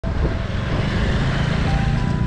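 A motorbike riding past close by, its engine running over a strong low rumble. The sound cuts in abruptly at the start.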